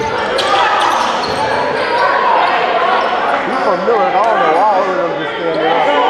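A basketball being dribbled on a gym floor, its bounces ringing in the large hall, under the voices of players and spectators calling out throughout.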